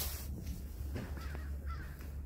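Faint bird calls over a steady low outdoor rumble.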